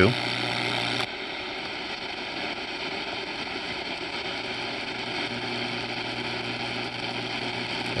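Shortwave radio static from a Riptunes RACR-510BTS boombox speaker as the digital tuner is scrolled across shortwave band two, with no station coming in. A steady hiss; a low hum under it cuts off abruptly about a second in.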